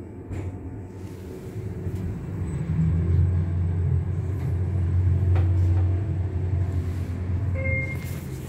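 Schindler 3300 machine-room-less traction lift car travelling between floors: a low rumble builds after about two seconds, holds, then eases as the car slows to a stop. A short beep sounds near the end as the car arrives.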